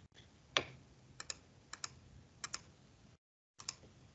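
Faint clicks of computer keys or mouse buttons in quick pairs, about one pair a second, as numbers are entered into a TI-84 calculator emulator. A louder single click comes about half a second in. The sound drops out completely for a moment near the end.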